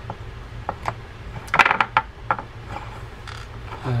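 Small metallic clicks of a screwdriver working a small screw out of a fishing reel spool's face, with a quick run of louder clicks about a second and a half in as the loose screw is handled and set down on the wooden bench.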